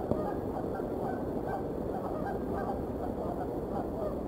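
Geese honking, many short overlapping calls in a continuous chorus.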